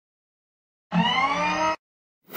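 A short logo-sting sound effect: a rising, whirring tone that starts about a second in and lasts under a second before cutting off.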